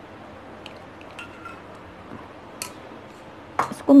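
Steel utensils clinking lightly against a steel mixing bowl a few times, with a louder clink near the end, as ghee is added to flour and mixed in by hand.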